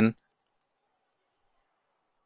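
A few faint computer-keyboard keystrokes soon after a spoken word ends at the very start, then near silence with a faint hum.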